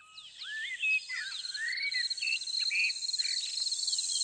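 Countryside ambience: birds give a string of short chirps and sweeping calls over a steady, high, pulsing chirr of insects such as crickets, which grows louder about a second in.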